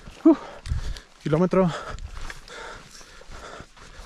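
A man's voice: a brief vocal sound near the start, then a longer drawn-out one about a second and a half in, with a low thump between them.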